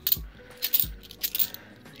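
Cupronickel Australian 50-cent coins clinking against each other as they are thumbed one by one off a stack held in the hand: a scatter of light metallic clicks.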